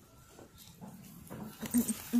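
A domestic cat making short, low sounds during play-fighting with a person's hand. The sounds start about a second in and get louder toward the end.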